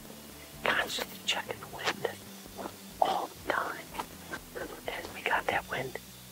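A man whispering in short phrases, starting about half a second in.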